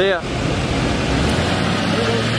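Pickup truck engine running as the truck pulls slowly away, with a steady low hum that strengthens partway through.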